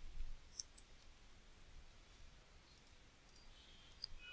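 A few faint computer keyboard key clicks in the first second, then near silence with a faint click or two near the end.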